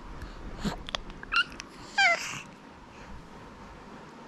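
A six-month-old baby's two short, high-pitched squeals, the first about a second in and the louder second one about two seconds in, falling in pitch.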